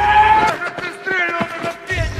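Battle-scene film soundtrack: loud cries that fall in pitch, mixed with sharp cracks, over music.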